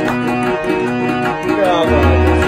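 Harmonium playing sustained chords with tabla accompaniment; a voice glides down in pitch near the end.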